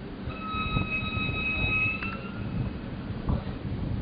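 Yellow diesel locomotive moving slowly past, its engine running with a low rumble and a couple of knocks. About a quarter second in, a steady high-pitched tone sounds for about two seconds.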